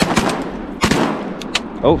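Several shotgun shots fired at ducks in quick succession, two close together at the start and another just under a second in.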